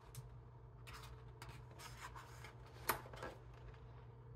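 A page of a large hardback art book being turned by hand. The paper slides and rustles for about two seconds, then lands with one sharp flap about three seconds in and a softer one just after.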